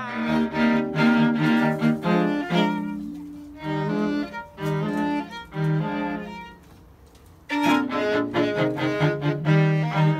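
A string trio of violin and other bowed strings playing a classical piece, with sustained, overlapping notes. The playing drops away briefly about two-thirds of the way through, then comes back in.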